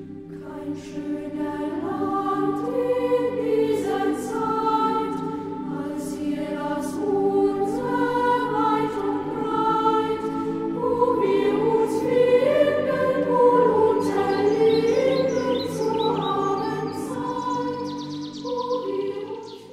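A choir singing a slow piece in held notes and full chords, growing louder over the first couple of seconds.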